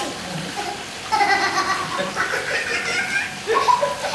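A man and a boy laughing over the steady sizzle of fish deep-frying in a wok of hot oil.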